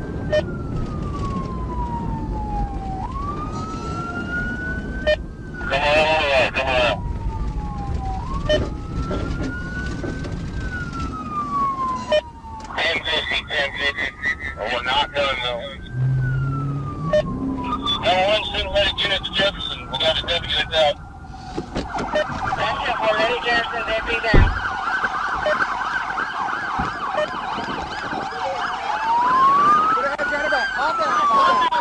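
Police car siren wailing in slow rising and falling sweeps, broken three times by short harsh bursts of a different siren tone, then switching to a fast yelp for most of the last third before returning to the wail. The cruiser's engine and road noise run underneath, and a single sharp thump lands about 24 seconds in.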